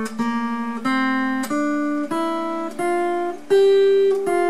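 Acoustic guitar picking a slow melody of single notes, about six in all, each one plucked and left to ring over a sustained lower note. The last note, near the end, is the highest and loudest.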